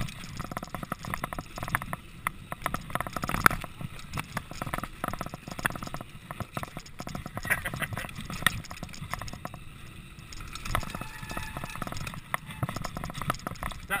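Mountain bike rattling and clattering as it rides fast down a rough dirt trail, a dense run of short knocks from the bike jolting over bumps, heard through a GoPro HD Hero2 action camera. A short laugh at the very end.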